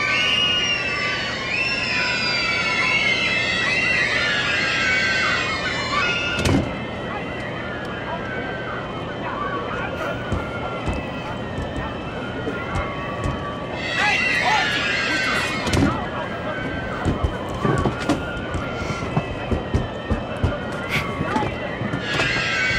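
A crowd of young children shrieking and shouting excitedly, many high voices over one another. The loudest bursts come at the start, about six seconds in, and again around fourteen to sixteen seconds, over a steady low hum, with scattered knocks and clatters later on.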